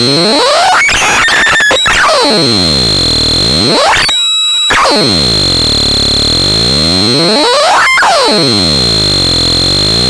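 Electronic noise from an effects-processed noise box: a loud, dense harsh tone sweeping down in pitch and back up about every three to four seconds over a steady high whine. Bursts of crackling clicks come about a second in and again near the end, and the sound drops out briefly near the middle.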